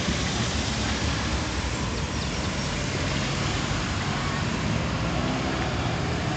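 Road traffic: a line of cars driving past, a steady mix of engine hum and tyre noise on the road.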